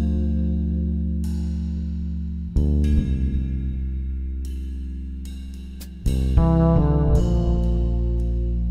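Spectrasonics Trilian virtual fretless bass, doubled, holding long low notes that slowly fade, with a new note about two and a half seconds in and a quick run of notes about six seconds in. Light cymbal strokes from a drum kit sound above.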